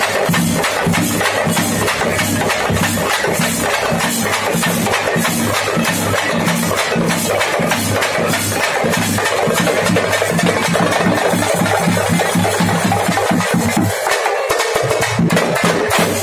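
A marching street drum band on a strapped barrel drum and smaller drums, beating a loud, fast, dense rhythm with low notes held underneath. The low notes drop out for a moment near the end.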